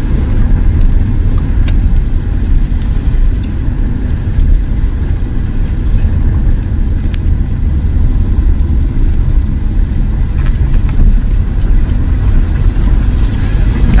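Steady low rumble of a car driving along a road, heard from inside the cabin: engine, tyre and wind noise, with a few faint clicks.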